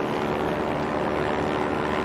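Propeller aircraft engines droning steadily, heard from inside the cabin.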